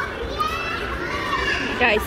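Voices in a busy public place: a child's high-pitched voice calls out over a background of chatter, and a word is spoken near the end.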